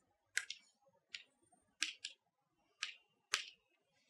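Chalk tapping and scratching on a blackboard while words are written: a faint string of short, sharp clicks, about seven of them, at uneven spacing.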